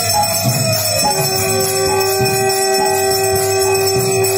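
Hand bells ringing continuously during a Hindu aarti, joined about a second in by a conch shell (shankh) blown in one long, steady note.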